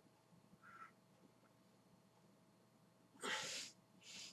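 A man breathing out hard once, a short noisy puff of breath lasting about half a second, about three seconds in; otherwise near silence, with one faint short sound under a second in.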